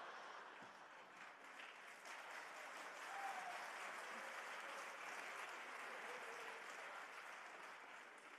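Theatre audience applauding, faint and steady, swelling slightly about three seconds in.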